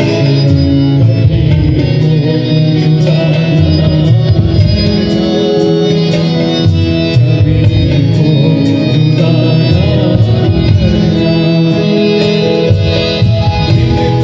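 Live Indian ghazal accompaniment: a harmonium playing sustained tones, with tabla strokes and an electronic keyboard.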